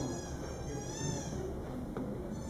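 Common buzzard giving one drawn-out, cat-like mewing call that rises and then falls, lasting about a second and a half, over a low background rumble.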